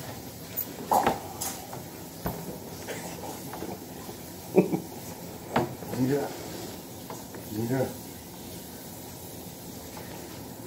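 A few short bursts of a person's voice, sounds without words, one falling sharply in pitch about four and a half seconds in, mixed with light knocks and handling bumps over a steady hiss.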